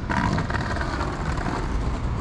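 Street traffic noise: a motor vehicle going past, loudest at the start and fading over about a second and a half, over a steady low rumble.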